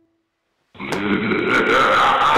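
The last note of the string trio dies away into silence. About three-quarters of a second in, a loud, rough monster growl starts abruptly and carries on, wavering in pitch.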